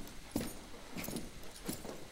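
Faint footsteps of a cowboy's boots with jingling spurs: three steps about two-thirds of a second apart.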